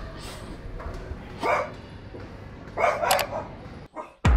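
A dog barking in a room: one bark about a second and a half in, then a couple of quick barks near the end.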